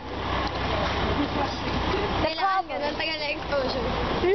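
A steady low rumble and hiss of outdoor noise for about two seconds, then people's voices talking briefly.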